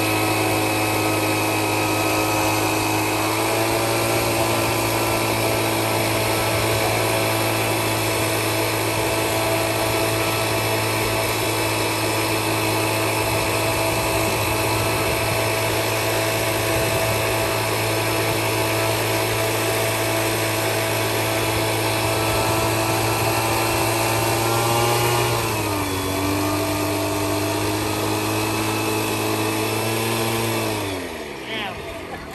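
Backpack two-stroke mist-blower engine running steadily at high speed, blowing fish feed out through a long plastic pipe. Its pitch steps up slightly a few seconds in and drops a little near the end.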